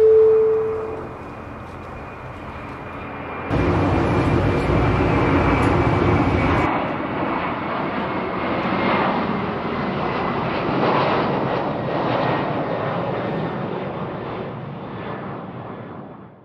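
Steady rush of jet aircraft engines heard around an airport gate and jet bridge, stepping louder and brighter a few seconds in and fading out near the end. It is preceded right at the start by a falling two-note tone.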